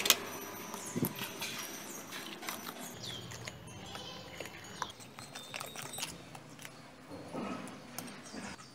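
Metal spoon clinking and scraping against a glass bowl while stirring an egg into a thick oat batter, with a sharp clink right at the start and irregular clicks throughout.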